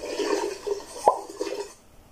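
Toilet flush sound effect that fades out near the end, with a sharp click about a second in.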